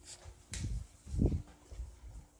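A few low, muffled thumps and rustles from a phone being handled and carried while walking, over a faint steady hum.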